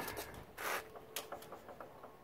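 Light handling noises on a classic motorcycle being made ready to kickstart: a short scrape, then a few small clicks as the controls and kickstart are worked. The engine is not running.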